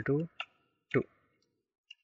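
A few short computer-keyboard keystrokes clicking between spoken words as code is typed.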